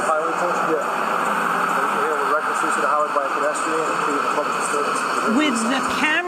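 Two men talking, their voices muffled and half buried under a steady noise of highway traffic, picked up by a camera resting on a police cruiser's roof.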